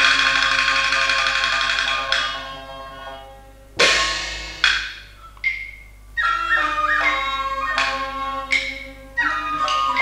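Qinqiang opera instrumental accompaniment between sung lines. Held notes from fiddles and flute fade out after about two seconds. A sharp percussion strike follows, then a few more strikes, and from about six seconds in a plucked-and-bowed melody runs with wooden clapper-like hits.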